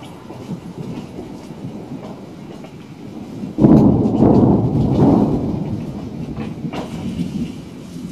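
Thunder: a sudden loud clap about three and a half seconds in, rolling on as a deep rumble that fades away over the next few seconds.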